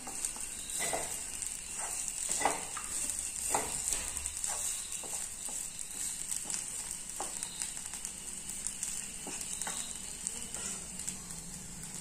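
Grated potato and coconut frying with a steady, faint sizzle in a non-stick kadai, while a wooden spatula stirs it, scraping and tapping against the pan every second or two.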